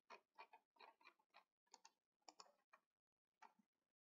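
Near silence, with faint irregular clicks or ticks a few times a second that stop shortly before the end.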